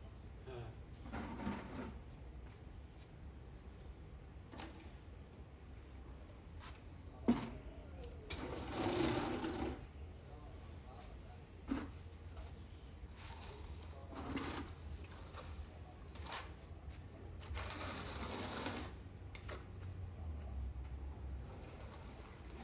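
Tile-laying work: two sharp knocks and several brief noisy scrapes or shuffles over a low steady hum.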